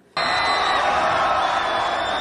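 Crowd cheering and whooping, a dense steady roar that starts abruptly a moment in.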